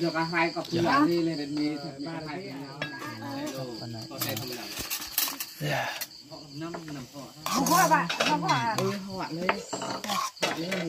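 Metal spoon clinking and scraping against an aluminium bowl as a minced mixture is stirred, with crickets chirping steadily in the background and voices at times.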